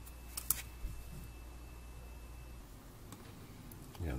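A few faint clicks and taps in the first second from hands handling the soldering iron and circuit board on the bench, over a faint steady hum that stops about two and a half seconds in.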